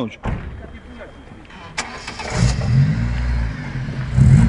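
Opel Corsa B hatchback's petrol engine running low as the car moves, then revving up and getting louder about halfway through.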